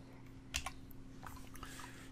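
A few faint computer keyboard keystrokes: a pair of taps about half a second in, then a scatter of lighter ones near the end, over a faint steady low hum.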